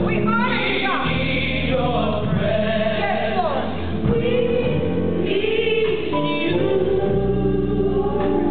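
Gospel praise team singing in harmony, voices sliding between notes over held chords, with keyboard accompaniment carrying steady bass notes.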